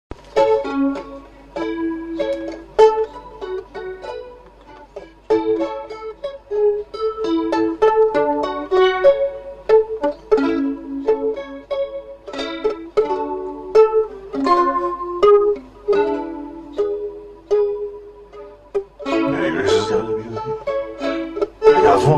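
Instrumental intro played on a plucked string instrument, single notes picked out in a melody, each note dying away quickly. About three seconds before the end the playing turns fuller and denser.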